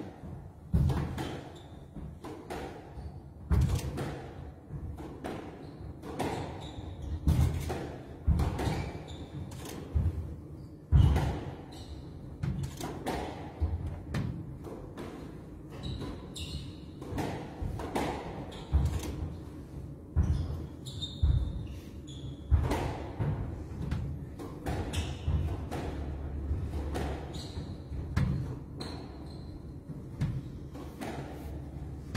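Squash ball being struck by rackets and rebounding off the court walls during a rally: a long run of sharp, irregular hits, roughly one a second, each echoing briefly around the court.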